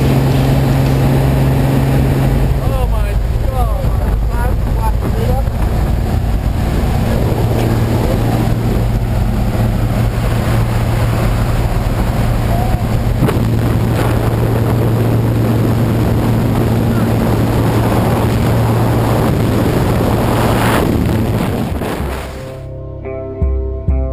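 Single-engine propeller plane droning steadily from inside the cabin, with wind rushing through the open jump door. The engine note drops in pitch about three seconds in, and the sound fades near the end.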